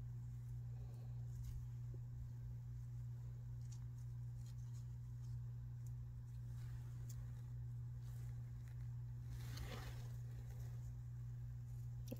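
A steady low hum with faint rustling and light ticks from nitrile-gloved hands pressing paper strips into wet resin, and a slightly louder soft brushing sound about nine and a half seconds in.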